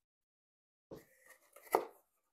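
A small cardboard knife box being handled: a scrape about a second in, a few light rustles, then one sharp knock near the end as the box is set down on the table.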